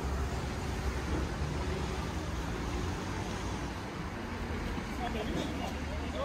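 Steady low rumble of a car engine running close by, over road traffic noise, with faint voices near the end.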